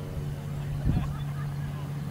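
Legal Eagle ultralight's Generac four-stroke V-twin engine running steadily in flight, heard from the ground as an even drone.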